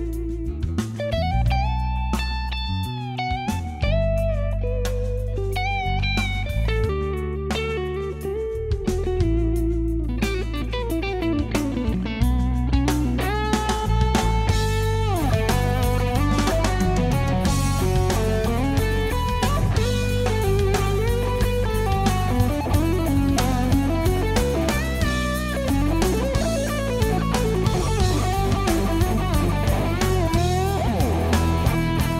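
Lead electric guitar on an Ibanez signature guitar with DiMarzio pickups through a Mesa Boogie amp, playing sustained singing melody notes with string bends and vibrato over low backing notes. The playing grows busier and denser about twelve seconds in.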